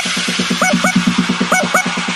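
Indonesian DJ remix in the tabrak style: a fast bass pulse of about eight beats a second under short honking horn stabs that swoop up and down in pitch, coming in pairs.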